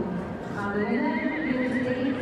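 A horse whinnies: one long call with a quavering pitch, starting a little over half a second in and ending near the end.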